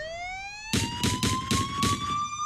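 A police siren winding up, its pitch rising steadily, while five gunshots go off in quick succession, about four a second, starting just under a second in.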